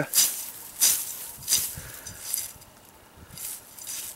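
About five quick swishes of a blunt knife edge slicing through dry grass stems; the first three are the loudest. The recurve section of the Gavko Spartan's blade is doing the cutting. Its edge is dulled by tar from cutting asphalt shingles, yet the curve traps the grass against the edge and it still cuts.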